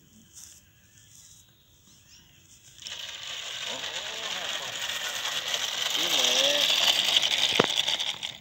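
Small landing-gear wheels of a radio-controlled trainer plane rolling on rough asphalt after touchdown: a scratchy rolling noise starts suddenly about three seconds in and grows louder, with a sharp click near the end.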